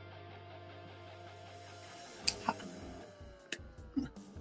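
Faint background music, with a sharp click about two seconds in and a few lighter clicks near the end: a paint container's lid being snapped open carefully so the paint doesn't spurt out.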